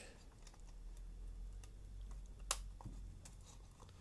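Faint small clicks and scrapes of fingers fitting a jumper onto the header pins of a Gotek floppy drive emulator's circuit board, with one sharper click about two and a half seconds in.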